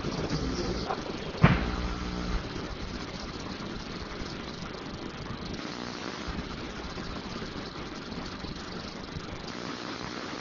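Meeting-room background noise: a low hum with a single sharp knock about a second and a half in, then a steady hiss of room tone.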